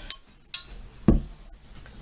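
Steel M1 helmet shell and its chin strap buckles being handled, making three sharp metallic clinks and knocks. The loudest is a duller knock about a second in.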